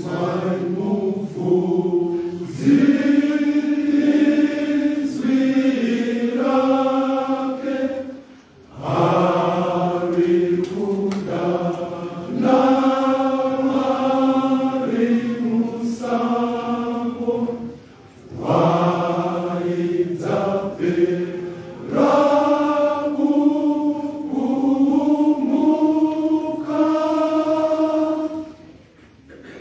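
Men's choir singing in long sustained phrases, breaking off briefly about eight and eighteen seconds in and stopping at the end.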